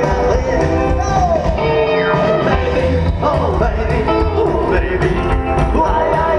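A rockabilly band playing live through a PA with guitar and a steady beat, heard from out in the crowd.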